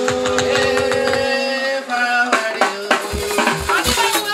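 Live band music: a chord of several notes held for about two seconds over light percussion, then the music moves on and a bass drum beat comes in near the end.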